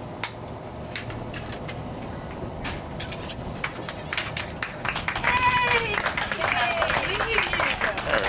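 Excited high-pitched squeals and cheers from several people break out about five seconds in, their pitch rising and falling. Underneath runs the steady low rumble of a boat's engine, with scattered sharp claps or clicks.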